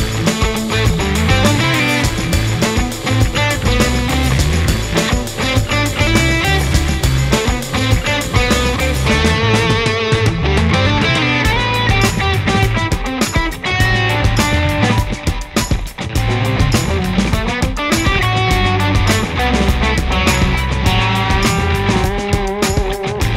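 A rock mix of several distorted electric guitar tracks and bass guitar, all run through a Rare Buzz Effects Fuzz Bob-omb fuzz pedal, over a steady beat. The pedal is based on a Soviet germanium fuzz, with silicon gain stages.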